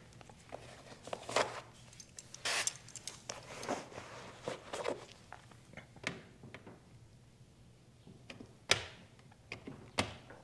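Window tint film and its plastic liner being handled and pressed by hand against car door glass: scattered rustles, crinkles and soft knocks, with the sharpest one near the end.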